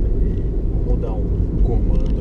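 Cabin noise of a JAC T50 CVT SUV under way: a steady low rumble of engine and tyres on the road.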